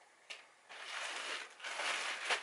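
Plastic poly mailer rustling and crinkling as it is handled and a shipping label is pressed onto it, starting a little under a second in after a single light click.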